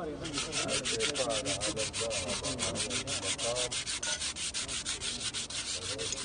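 Cloth or pad rubbed rapidly back and forth by hand over a metal surface to polish it: a steady rasping at about eight strokes a second, starting abruptly.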